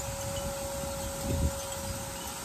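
A single steady ringing note, held at one pitch, over a steady outdoor background hiss, with a soft low thud about a second and a half in.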